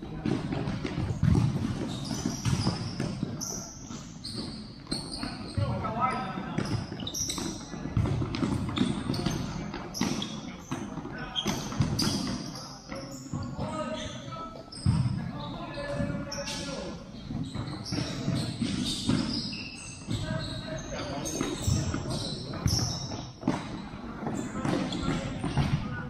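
Futsal match in a large indoor hall: the ball knocks repeatedly as it is kicked and bounces on the court, amid players' shouted calls that echo around the hall.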